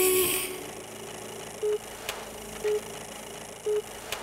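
A held sung note fades out in the first half second. Then come three short, even beeps about a second apart over a steady hiss with a faint click or two, an old-film projection sound effect.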